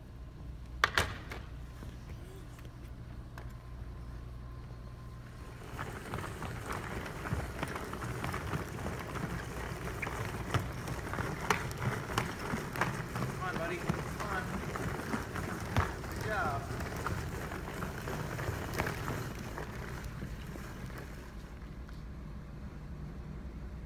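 Plastic wheels of a toddler's push-walker toy rolling across a wooden gym floor. From about six seconds in there is a rough rolling rumble with scattered knocks and clatters.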